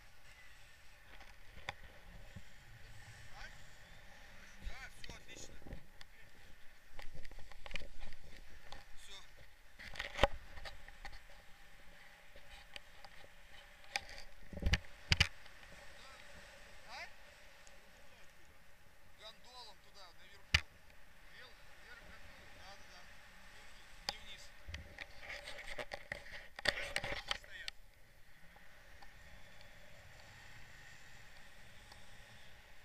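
Wind and airflow noise on the camera of a tandem paraglider in flight, with faint, indistinct talk and a few sharp knocks on the camera mount, the loudest about ten, fifteen and twenty seconds in.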